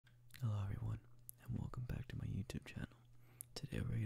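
A person speaking in a soft whisper in short phrases, with small clicks between the words and a faint steady low hum underneath.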